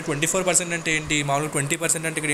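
Only speech: one voice talking steadily, with no other sound standing out.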